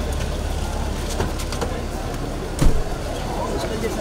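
An SUV door shutting with a single thump about two and a half seconds in, over a steady low engine hum and people talking.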